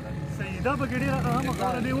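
A man talking over the steady low rumble of a moving car's engine and road noise inside the cabin.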